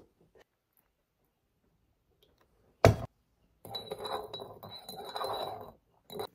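A single sharp knock about three seconds in, as something is set down on a wooden table. It is followed by about two seconds of scraping and clinking as a wooden spoon stirs tea in a handmade stoneware mug.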